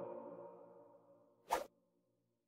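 The final sung chord of a choir's hymn dies away over the first second, then a single short whoosh sound effect comes about one and a half seconds in.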